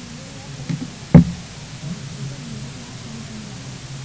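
A single sharp knock a little over a second in, with a fainter tap just before it, over a low murmur of background chatter in a large room.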